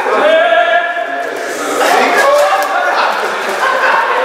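A group of men shouting and laughing over one another, with no clear words.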